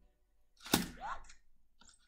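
Anki Vector robot making a sharp click about three-quarters of a second in, followed by a short rising electronic chirp and a couple of fainter ticks.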